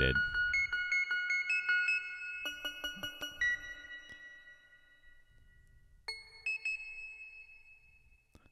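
PlantWave plant-music app playing sparse, high, ringing keyboard-like notes generated from a houseplant's electrical signal, several a second at first, thinning out and fading, with a few more notes about six seconds in. Which instrument sounds marks the plant's current activity level.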